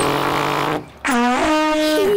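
A tuba is blown with a faulty, comical sound: a rasping, breathy blast, then after about a second a note that slides up and holds. The funny sound comes from a damaged tuba that needs mending.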